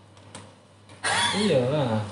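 A voice saying "iya" in the second half, after a fairly quiet first second that holds one faint click.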